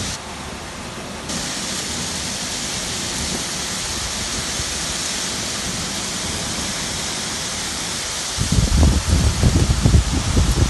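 Torrential rain and hail pouring down in a dense, steady hiss. Near the end a low, irregular rumbling buffet joins it.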